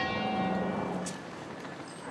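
A tower bell struck once, its ringing tones slowly fading away.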